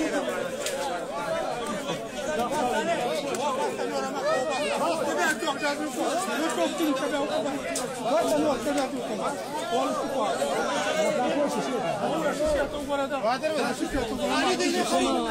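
Several people talking and calling out at once: a steady chatter of overlapping voices.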